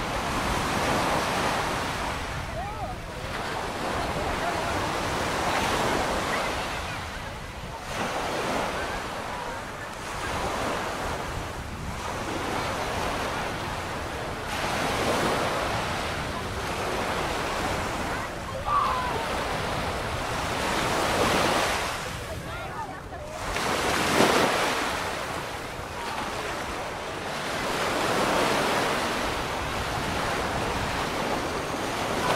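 Small waves breaking on a sandy shore, the surf swelling and fading every few seconds.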